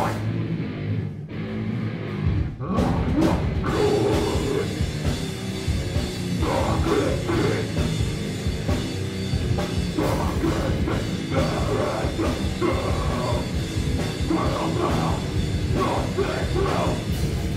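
Loud live heavy rock band playing a song with drums, guitars and shouted vocals, heard from among the crowd. The song breaks off briefly twice in the first few seconds before running on from about four seconds in.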